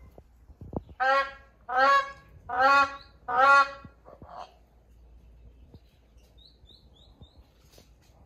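Black crowned crane calling: four loud calls in a row, each about half a second long, starting about a second in.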